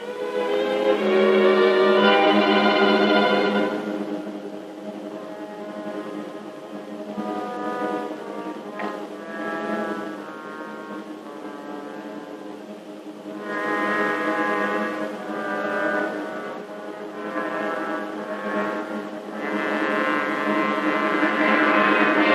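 Suspenseful orchestral film score: sustained brass chords over a low held note, loud in the first few seconds, softer in the middle, and building again near the end.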